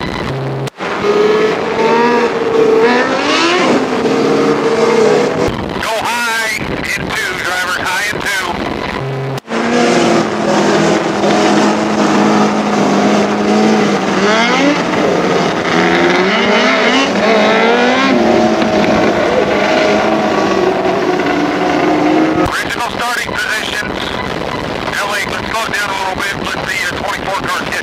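Several 600cc micro sprint car engines running at low speed around the dirt oval, their revs rising and falling. The sound breaks off abruptly for a moment twice, about a second in and about nine seconds in.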